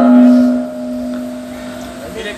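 A man's chanted Arabic recitation ends on one long held note that fades away slowly, leaving a single steady tone dying out.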